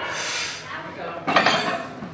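Voices shouting encouragement, breaking in loudly about halfway through, with light metallic clinks of the loaded deadlift bar's plates.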